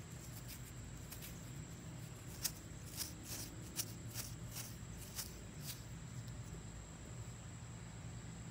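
Faint, scratchy rubbing as a thumb wipes caked dirt off a small dug-up metal badge fragment, with a handful of short scrapes in the middle, over a steady low hum.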